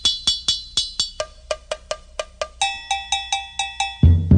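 Opening of a samba recording: a metal percussion bell struck in a quick, even rhythm of about four to five ringing strikes a second, alone before the band comes in. Its pitch shifts about a second in and again past the halfway mark, and the strikes come faster near the end.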